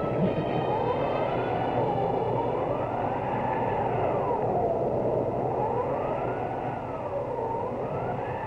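Film soundtrack: a wailing tone that slowly rises and falls, peaking about every three seconds, over a steady rushing noise.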